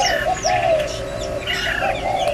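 Several aviary birds calling at once: a continuous run of low, repeated arching notes, with short higher chirps and whistles scattered over them.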